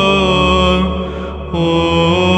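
Greek Orthodox Byzantine chant: a chanter holds a long, drawn-out note over a steady low ison drone. The voice fades briefly about a second in, then takes up a new held note.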